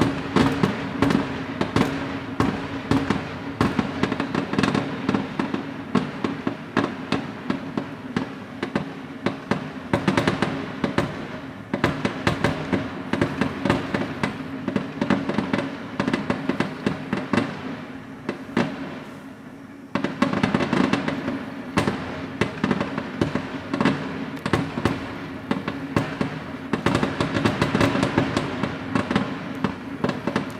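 Aerial fireworks display: shells bursting one after another with dense crackling. There is a short lull a little past halfway, then a fresh barrage.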